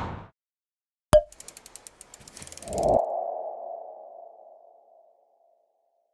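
Logo-animation sound effects: a sharp hit, a quick run of ticks swelling into a whoosh, then a single ringing tone that fades away over about two seconds.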